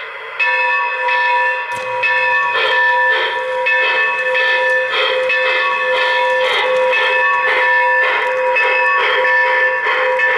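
Electronic locomotive bell from an O-gauge model train's sound system, ringing repeatedly at an even pace of a little under two strikes a second, starting about half a second in.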